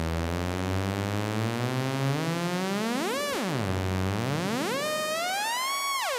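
Bastl Instruments Cinnamon eurorack filter self-oscillating at full resonance, its frequency knob swept by hand: a pitched synth tone with many overtones. It holds low for about two seconds, glides up and back down about three seconds in, then climbs again in steps to a high pitch near the end.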